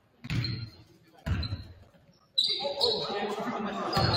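A basketball dribbled on a hardwood gym floor, with single bounces echoing in the large hall. A little past halfway, voices and court noise rise and stay at a steady level.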